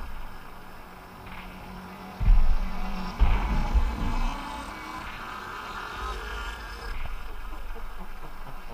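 Sparse electronic IDM music, with a steady hum-like drone and layered mid-range tones, and deep bass thuds about two and three seconds in.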